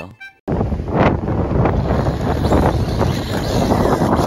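A small quadcopter drone's propellers spinning as it tips up on the grass and fails to take off, a loud rushing noise that starts suddenly about half a second in. The opening half-second is the end of a short music sting.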